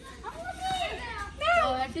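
Children's voices talking and calling out over one another, with one loud, high call about one and a half seconds in.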